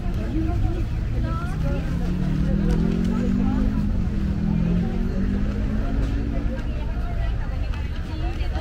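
Outdoor market crowd ambience: scattered voices of passers-by over a low motor-vehicle drone. The drone rises slightly in pitch about two seconds in and holds for a few seconds.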